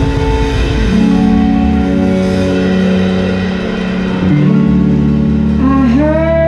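A live band playing a song intro: sustained guitar and bass chords, changing about a second in and again just past four seconds in. A woman's singing voice comes in near the end.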